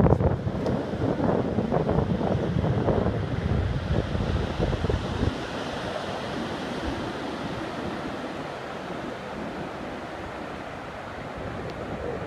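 Ocean surf washing onto a sandy beach, with wind buffeting the microphone through the first five seconds or so before it settles into a steady rush of surf.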